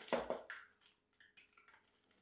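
Faint wet plops and squishes of thick meat sauce sliding out of a glass measuring cup into a plastic-lined slow cooker.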